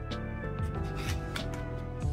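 Background music with a steady beat and a melody.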